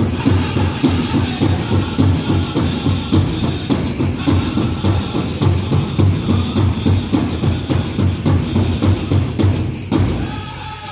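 Powwow drum group playing a contest song: a big drum beaten in a steady, even rhythm, with the metal cones of jingle dresses rattling. The drumming stops at the very end.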